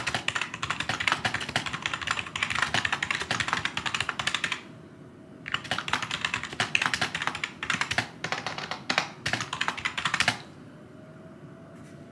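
Fast typing on a computer keyboard: a rapid stream of key clicks that pauses for about a second near the middle and stops a little under two seconds before the end.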